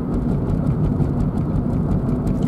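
A car being driven, heard from inside the cabin: a steady low rumble of engine and road noise.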